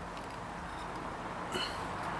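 Quiet background with a faint steady hum and no distinct event, apart from one brief small sound about one and a half seconds in.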